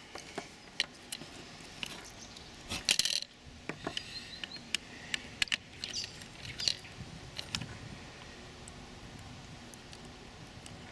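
Small clicks, taps and light scrapes of a screwdriver and cable being worked into a screw terminal block on a circuit board, with a louder rattle of clicks about three seconds in.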